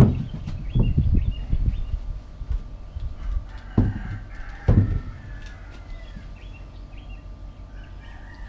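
Low knocks and thumps on a wooden porch as a wooden chair is moved and sat on, the loudest near the start and twice around four to five seconds in. Birds chirp faintly in the background, with a rooster crowing in the distance.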